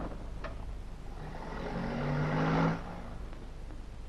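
A car engine running with road noise, swelling in loudness for about two seconds and then cutting off suddenly.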